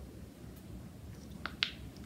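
Two sharp, light clicks in quick succession about a second and a half in, as a small lidded plastic vial is knocked over onto carpet.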